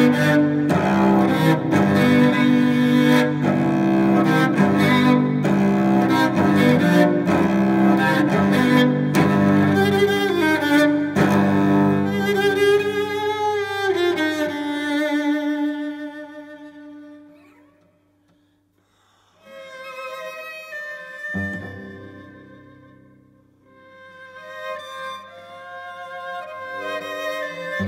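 Cello bowed in a busy, loud passage for about fourteen seconds, ending on a long held note that slides down and fades almost to silence. After the pause, quieter sustained notes come back, with a sharp new entry about three quarters of the way through.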